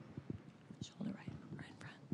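A quiet pause with scattered faint clicks and taps and a faint, low voice in the background.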